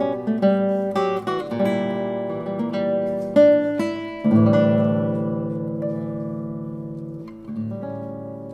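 Solo Arcángel classical guitar playing fingerstyle: a run of plucked notes, then a loud full chord about four seconds in that rings and slowly fades, with a softer note near the end.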